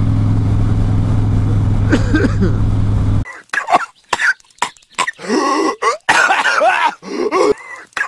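Harley-Davidson V-twin running steadily at cruising speed for about three seconds, then cut off suddenly. It is replaced by a cartoon character's voice coughing and groaning in short bursts with silent gaps between them.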